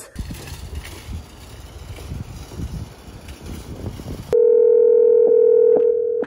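Low rumble of a car's cabin for about four seconds, then a phone call's ringback tone: one loud steady tone held for about two seconds as the outgoing call rings.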